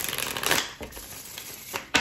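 A deck of tarot cards being shuffled by hand: a rapid patter of card edges clicking and sliding, louder in the first half-second and thinning out after about a second.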